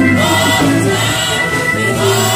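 Gospel praise team singing together with keyboard accompaniment, held chords over a sustained low bass note.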